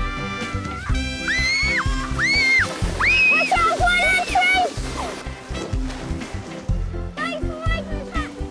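Background music, with a child's excited squeals several times between about one and five seconds in.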